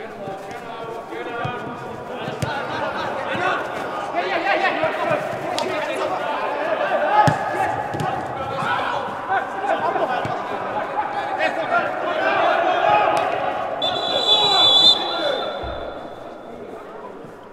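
Footballers shouting and calling to one another across an indoor hall, with the occasional thud of the ball being kicked. A referee's whistle sounds shortly before the end.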